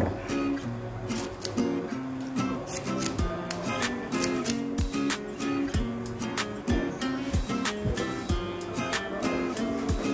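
Background music of plucked acoustic guitar notes, with short sharp clicks scattered through it.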